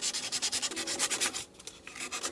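Sandpaper rubbed by hand in rapid short strokes over the wooden neck heel of a violin, smoothing the freshly carved wood. The strokes pause briefly about one and a half seconds in, then start again.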